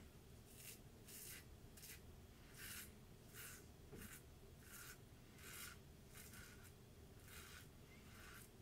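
Safety razor blade scraping through lathered stubble on the neck in short, faint strokes, about one and a half a second.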